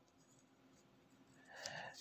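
Near silence, then a faint scratching of a ballpoint pen writing on paper for the last half second or so.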